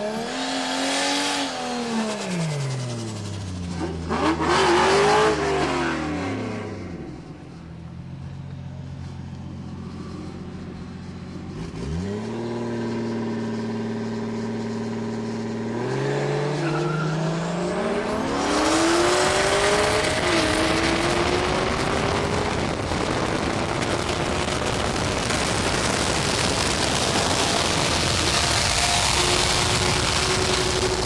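Street-racing cars, a turbocharged 1JZ-engined Mazda RX-7 and a nitrous-fed C5 Corvette V8: engines revving, then running steadily. About halfway through comes a full-throttle pull, with engine pitch climbing, one gear change a few seconds in, and loud wind and road noise building toward about 140 mph.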